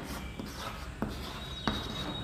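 Chalk writing on a chalkboard: faint scratchy strokes with two sharp taps of the chalk against the board, about a second in and again past halfway.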